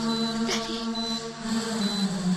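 Film background score of sustained, droning chant-like tones, with a short high beep repeating a little more than once a second, like an ICU heart monitor.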